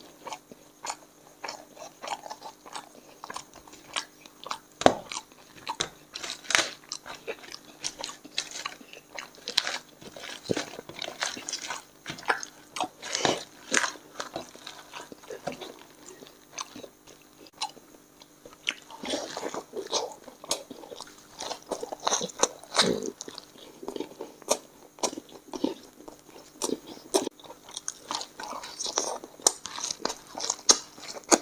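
A person chewing and biting mouthfuls of puri soaked in chicken curry, eaten by hand: a continuous run of short smacks and clicks from the mouth, with louder bites now and then.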